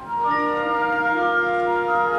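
High school concert band of woodwinds and brass playing slow, sustained chords; a new chord comes in just after the start, and the held notes shift in pitch through the phrase.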